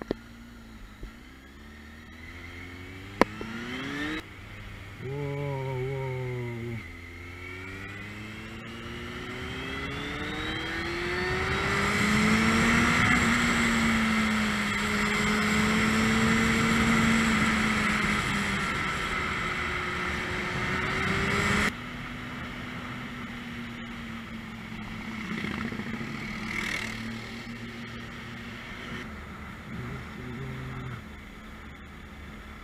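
Motorcycle engine accelerating, its pitch rising again and again through the gears, then holding steady and loud at speed with wind rush. It cuts off sharply about two-thirds of the way in to a quieter steady engine hum. Two sharp clicks sound in the first few seconds.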